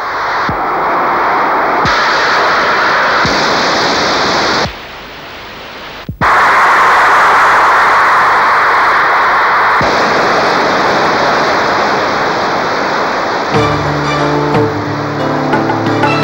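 Rocket engine roar at liftoff: a loud, steady rushing noise. It drops abruptly a little past four seconds, cuts out briefly about six seconds in, then resumes loud. Music with sustained tones comes in over it near the end.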